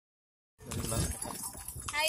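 Ride in a horse-drawn delman cart, starting about half a second in: the horse's hooves clopping and the cart rattling.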